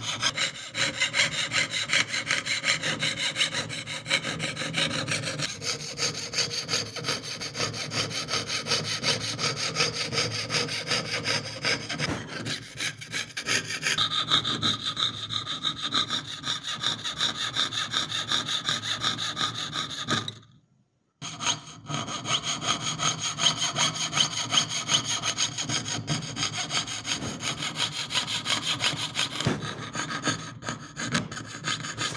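Jeweler's saw blade rasping up and down through thin metal sheet in fast, continuous strokes, piercing out the background of an engraved pendant design. A ringing whine rides on the strokes and changes pitch a few times as the cut moves, with a brief break a little past two-thirds of the way through.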